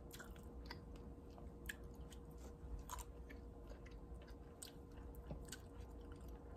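Faint close-mouthed chewing of blueberries: soft, irregular wet clicks as the berries are bitten and mashed.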